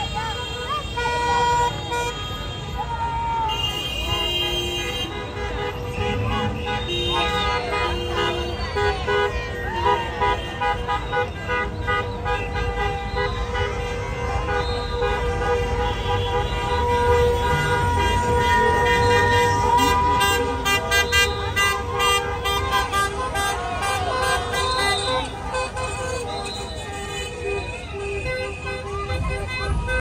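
Many car horns honking at once, overlapping short toots and long held blasts, over a crowd shouting and cheering amid slow street traffic.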